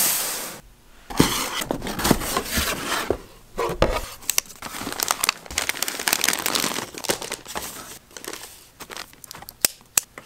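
Paper and plastic packaging crinkling and rustling as a box is unpacked by hand, with small clicks and knocks of cardboard. It opens with a short burst of noise, and the rustling thins out near the end.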